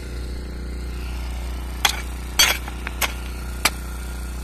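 A hoe's metal blade striking stony ground with sharp clinks, four strikes starting a little under two seconds in plus a couple of fainter taps, over a steady low hum.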